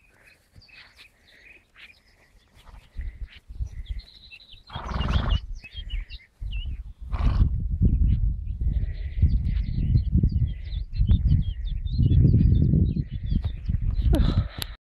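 Small birds singing across an open field in short, high, repeated phrases. From about five seconds in, a low, gusting rumble on the microphone grows louder than the birdsong.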